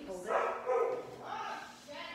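A woman's wordless vocal sounds, two pitched cries less than a second apart.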